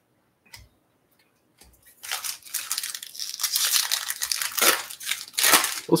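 Foil wrapper of a Topps Chrome Update trading card pack being torn open and crinkled by hand, starting about two seconds in and going on, loudest near the end. Before it, two faint taps as the pack is picked up from the stack.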